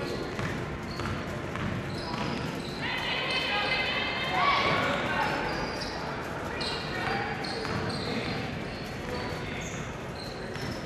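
Basketball being dribbled on a hardwood gym floor during play, under a bed of crowd voices and shouts in the gym that peak about four to five seconds in.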